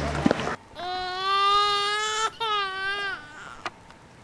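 A high, cry-like wailing voice: one long held wail, then a shorter one that drops in pitch at its end.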